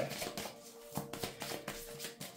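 Tarot cards being shuffled by hand: soft scattered taps and rustles of the cards. A faint steady tone runs underneath.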